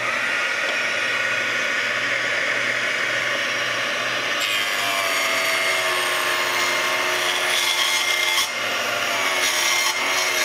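Proxxon miniature benchtop table saw running alongside its dust-extraction vacuum, ripping a board of lumber. About halfway through, the tone drops a little as the blade takes the cut.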